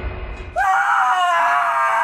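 A young woman's high-pitched, drawn-out scream, starting about half a second in, as a rushing noise with a deep rumble dies away.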